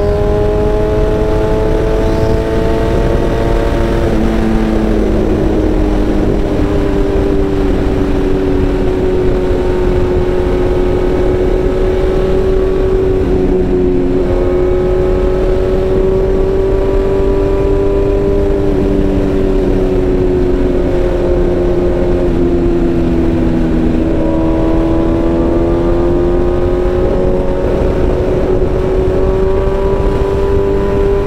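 BMW S1000RR M's inline-four engine, heard from the saddle while riding at fairly steady revs. Its pitch dips a little about four seconds in, and dips more slowly from about twenty seconds until it picks back up near the end, under a rush of wind noise.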